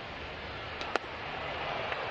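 A single sharp pop, about a second in, of a pitch smacking into the catcher's mitt on a swing-and-miss, over the steady hum of a ballpark crowd.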